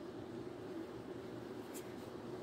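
Graphite pencil drawing lines on paper: faint scratching of the lead, over a steady low room hum.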